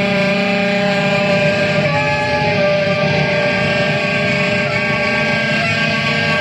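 Saxophone played live in an experimental piece: a dense, steady wall of many held tones sounding together, with no breaks.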